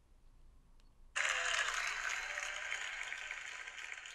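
Audience applause starts suddenly about a second in and carries on steadily, with a faint whoop or two on top.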